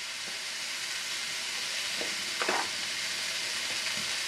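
Chicken frying in a pan on the stove, a steady sizzling hiss, with a light clink about two and a half seconds in.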